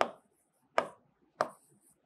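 Marker pen writing on a board: three sharp taps of the tip striking the surface, each followed by a short scratchy stroke.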